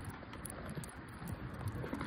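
Walking along a concrete sidewalk: footsteps with light, quick clicks, over a low rumble of wind on the phone microphone.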